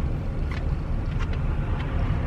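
Pickup truck under way, heard from inside the cab: a steady low rumble of engine and road noise.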